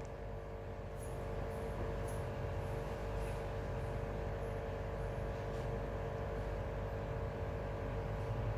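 Steady low hum with a faint even hiss of water running into a half-filled aquarium.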